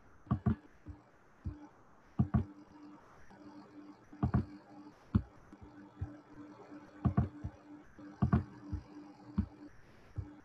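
Irregular sharp clicks and knocks, about a dozen in ten seconds, some in close pairs, over a faint steady hum that comes and goes.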